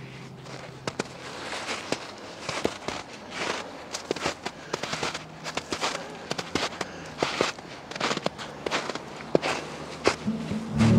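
Footsteps crunching through crusted snow, with sharp crackles and snaps coming irregularly, several a second.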